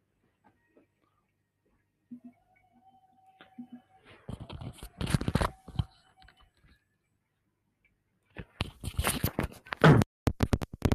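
Crackling and rustling of a wired earphone's inline microphone being handled, in two loud bursts: one about four seconds in, another starting near the end.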